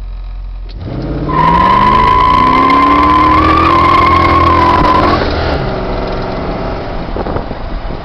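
A 1978 Mustang II's 302 V8 revs up through its Dynomax exhaust as the rear tires break loose in a burnout. A steady high tire squeal starts about a second in and stops about five seconds in, and the engine keeps running as the car rolls on.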